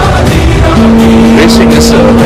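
Race car engine sound mixed in with music. Under a second in, a steady held tone sets in and carries on.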